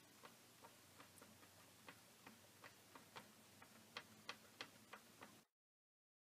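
Faint, light ticking, about three ticks a second, that cuts off suddenly near the end.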